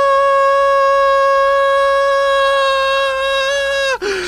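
A steady, high-pitched test-card tone with overtones, held without a break; it wavers slightly toward the end.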